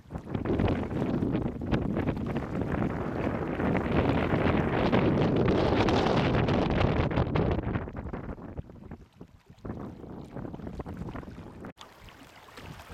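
Wind buffeting the camcorder's microphone, a dense rumble that is strong for the first seven seconds or so, then eases and comes in gusts, with a brief dropout near the end.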